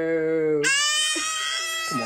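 Adults mock-wailing in long held notes: a low voice holds one steady wail, then a woman's high-pitched scream-like wail cuts in about two-thirds of a second in and is held, with the low voice still going underneath.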